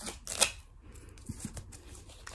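Rolled plastic-coated canvas print being unrolled and handled, rustling and crackling, with one sharp crackle about half a second in and a few fainter ones after.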